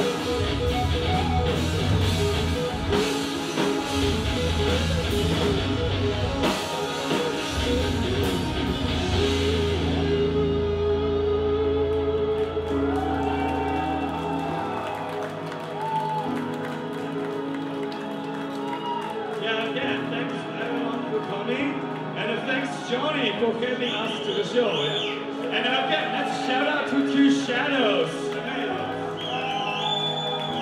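Live rock band playing with drum kit, bass and electric guitar in a large hall. About ten seconds in, the drums drop out and the sound thins to sustained guitar. Voices come over the top in the second half.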